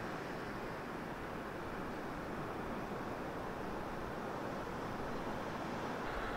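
Steady, even rushing outdoor background noise with no distinct events.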